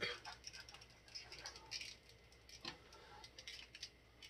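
Faint, irregular clicks and rubbing of a McFarlane Toys Izuku Midoriya action figure's plastic joints as it is bent and posed by hand; the joints are stiff and hard to line up.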